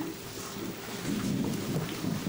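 A congregation sitting down in chairs: shuffling and rustling, with low indistinct voices mixed in.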